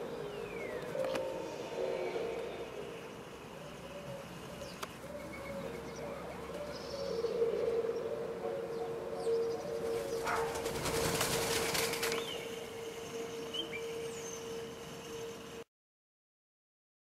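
Eurasian collared doves cooing, repeated low soft calls, with a burst of wing flapping about two-thirds of the way through as birds take off and a few high chirps from a small bird. The sound cuts off just before the end.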